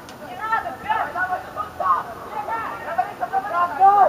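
Several high-pitched voices shouting short calls to one another across a football pitch during play.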